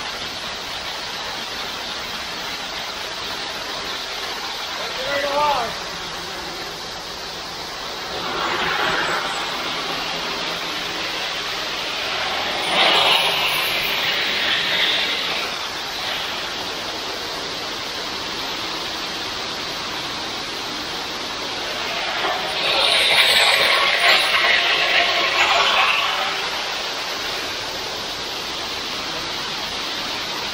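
Wet concrete pouring down a ready-mix truck's steel chute: a steady rushing hiss that swells louder three times as the flow surges. A short rising squeal about five seconds in.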